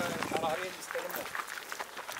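Men's voices speaking briefly, with the footsteps of a group walking on a dirt and gravel yard.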